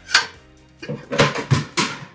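Tamarack solar racking rail being forced into a tight clamp connection on a steel angle-iron mount: one sharp metal knock, then a quick run of four or five clanks about a second in as the rail is knocked home.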